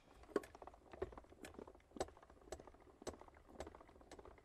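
Manual die-cutting and embossing machine being cranked by hand, with faint clicks about twice a second as an embossing folder rolls through its rollers.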